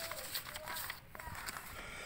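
Sheets of photocopied paper rustling and shuffling as they are handled and turned over.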